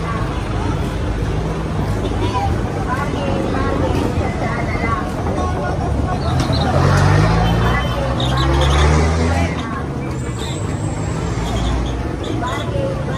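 Crowd chatter on a busy street with a truck engine running; the engine grows louder and rises in pitch from about six and a half seconds in, then drops away shortly before ten seconds.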